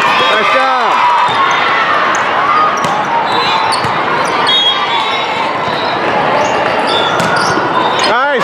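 Din of a busy multi-court volleyball hall: many voices at once, with sneakers squeaking on the court floor and balls being hit.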